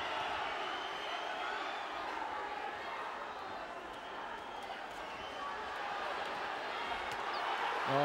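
Boxing arena crowd: a steady din of many voices shouting and cheering.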